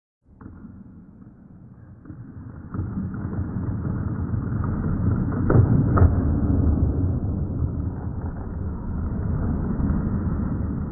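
A deep, dull rumble that swells in steps, with two heavy booms about half a second apart near the middle.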